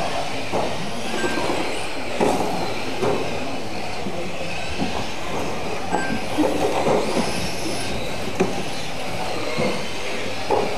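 Electric radio-controlled mini cars racing on a carpet track: a steady mix of high motor and gear whine and tyre noise, with a brief high arching whine about seven seconds in.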